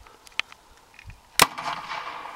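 Home-made PVC combustion potato gun, propane-fuelled and lit by a barbecue igniter, firing: a single sharp bang about one and a half seconds in, followed by a brief rush of noise. A small click comes about half a second in.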